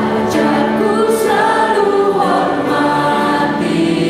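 Several voices singing a slow Indonesian hymn together in held notes, accompanied by piano and keyboard.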